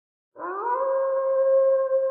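One long pitched note opening the channel's intro jingle. It starts about a third of a second in, glides up briefly, then holds steady.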